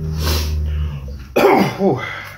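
A man coughing twice: a short breathy cough at the start, then a harsher, voiced cough about a second and a half in, his throat irritated by a very hot chili-and-vinegar sauce.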